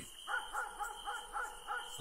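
Faint night-time ambience sound effect: a steady high whine with a quick run of short, repeated animal calls, about four a second.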